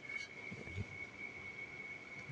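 Faint knocks and rubbing of a child's bicycle wheel and tyre being handled, over a steady high-pitched tone in the background.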